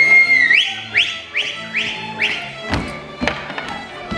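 A shrill whistle holds one high note, then gives five short, rising whistles about two a second, over góral folk band music. A couple of sharp foot stamps on the wooden stage floor come near the end.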